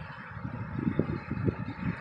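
Wind buffeting the microphone: a low, uneven rumble with a few brief gusts.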